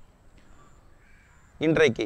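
A faint call from a bird in the distance, heard in a pause in a man's talk, and then his speech starts again about one and a half seconds in.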